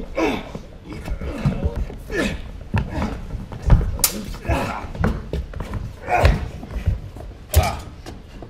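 Stage sword fight: several sharp knocks of sword blades and thuds of stamping feet, the loudest about four seconds in, with the actors shouting and grunting between them.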